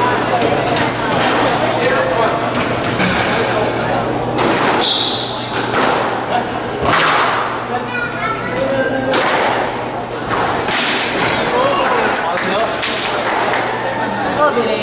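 Squash ball and racquet hits, sharp thwacks that echo in the court, come a few times over a steady din of hall noise and distant voices.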